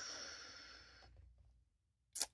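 A woman's soft, breathy sigh that fades out over about a second.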